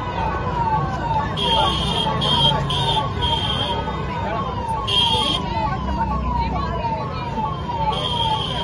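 An electronic siren sounding a repeating falling tone, about two and a half cycles a second, over a murmuring crowd. Several short high-pitched blasts come in between about one and a half and five and a half seconds in.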